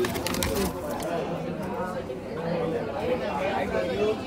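Brown paper bag crackling as it is handled for the first moment or so, then indistinct background chatter of many voices.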